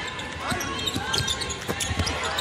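A basketball being dribbled on a hardwood court, a few bounces roughly half a second apart, over background voices in the arena.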